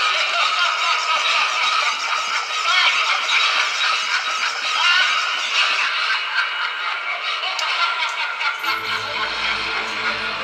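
A Halloween animatronic pumpkin-headed scarecrow plays its built-in spooky soundtrack, a mix of eerie music and effects with voice-like sounds, while it moves its shovel. About nine seconds in, a deep, droning music track comes in underneath.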